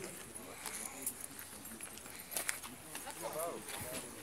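Footsteps in sandals on a concrete pavement, irregular light clacks, with people's voices in the background.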